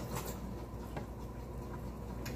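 A few faint clicks and taps from a knife and an avocado being handled on the kitchen counter, over a low steady hum.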